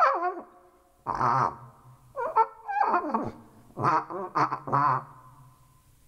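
Short pitched calls blown through a homemade wind instrument made of coiled clear plastic tubing, about seven in a row. Each call slides and wavers in pitch. They stop about five seconds in.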